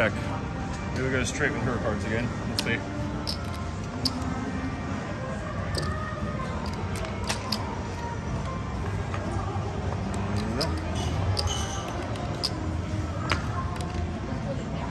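Casino table-game background: indistinct voices and music over a low hum, with scattered sharp clicks and taps from cards and chips being handled on the table.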